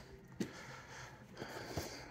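Quiet indoor store background with a sharp click about half a second in and a few faint ticks later on, as a boxed action figure is handled and taken off a shelf near the end.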